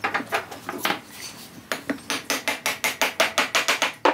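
A series of sharp taps: a few scattered ones at first, then an even, quick run of about five a second over the last two seconds.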